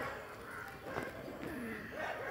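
Faint calls from caged birds: a few short, low, wavering notes.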